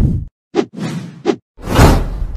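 Whoosh sound effects: a swoosh sweeping downward at the start, two short sharp swishes about three quarters of a second apart, and the loudest, a swelling whoosh near the end.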